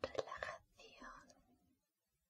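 A woman whispering close to the microphone in short phrases, trailing off in the last half second.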